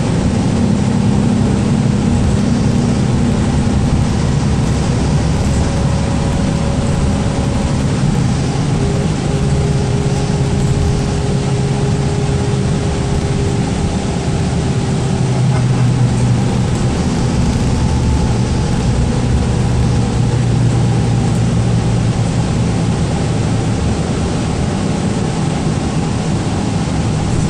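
Cabin noise inside a 2012 Gillig Low Floor city bus under way: a steady engine drone mixed with road noise. The engine note shifts lower partway through as the bus changes speed.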